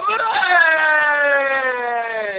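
A person's voice holding one long, high note that slowly falls in pitch.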